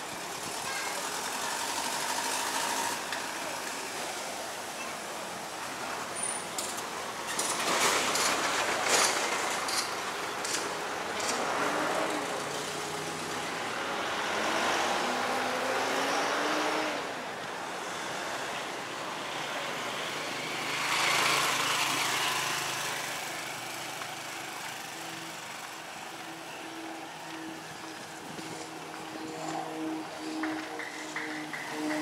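Street traffic ambience: several motor vehicles pass by in turn, each rising and fading. The loudest pass is about eight seconds in and comes with a scatter of clicks; others follow about fifteen and twenty-one seconds in.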